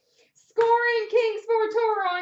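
A high-pitched, child-like voice singing, starting about half a second in, on notes held near one pitch with small bends.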